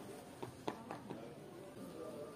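Quiet room with a few soft, irregular clicks from a mobile phone being handled, over faint background music.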